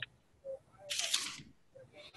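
A faint click, then about a second in a short burst of hissing noise lasting about half a second, like a rustle or breath on a microphone.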